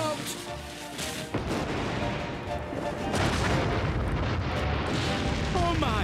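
Cartoon explosion sound effect: a sudden loud blast about a second and a half in, as a fused gunpowder barrel goes off, then several seconds of continuous deep rumbling blasts.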